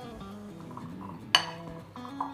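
Soft background guitar music, with one sharp clink a little past halfway as a stainless steel potato masher strikes the glass bowl during mashing.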